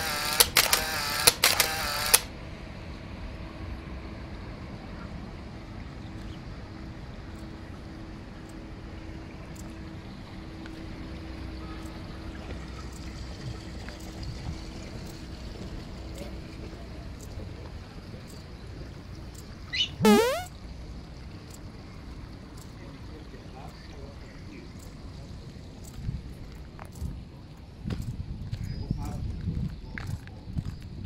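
Quiet outdoor background on a walk, with a faint steady hum through the first half. A voice is heard briefly at the start, and one loud wavering call sweeps up and down about twenty seconds in.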